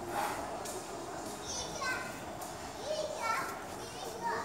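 Children's voices shouting and squealing over a steady background murmur, with two high calls that slide in pitch, about one and a half and three seconds in.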